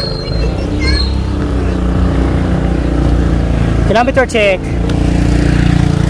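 Motorcycle engine running steadily while the bike rides up a sloping road, with a brief voice about four seconds in.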